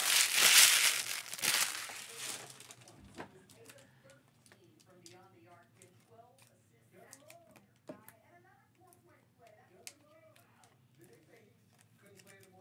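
A trading-card pack's wrapper being crinkled and torn open, loudly, for the first two seconds or so. After that it is quiet, with faint low voices and a few light clicks.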